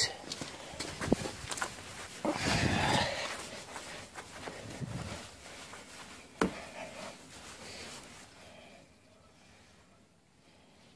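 Close rubbing and handling noises: a cloth wiped over freshly polished car paint, with a louder rub about two and a half seconds in and a sharp knock a little past the middle, growing quieter toward the end.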